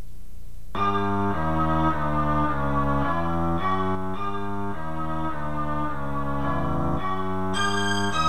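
Background music: a melody of held notes over a bass line, changing about twice a second, starting just under a second in and growing brighter near the end.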